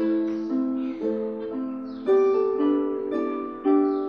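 Two harps, a small lever (Celtic) harp and a concert pedal harp, starting a duet together: plucked notes struck about twice a second that ring on and overlap.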